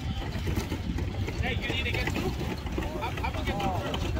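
Voices talking in the background over a steady low rumble.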